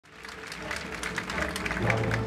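Audience clapping, fading in from silence, over steady background music.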